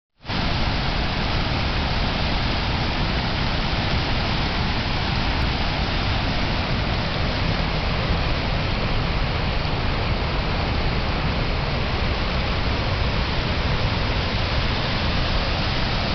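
Floodwater rushing through a dam's fishway bypass channel, running high at about a foot and a half deep: a loud, steady rush of turbulent rapids over rock.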